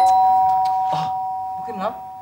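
Two-tone ding-dong doorbell chime: the lower second note sounds over the still-ringing higher first note, and both fade slowly over about two seconds.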